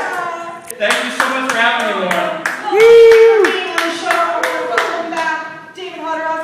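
Hands clapping in a steady rhythm, about three claps a second, under voices singing and calling out; one voice holds a loud note about three seconds in, the loudest moment.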